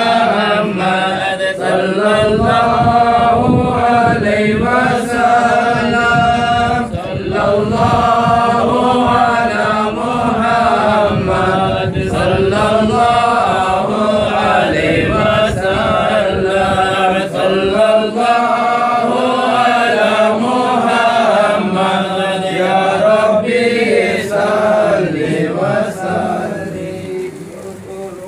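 A group of men chanting a devotional mawlid hymn together in unison, a loud, steady melodic chant that eases off near the end.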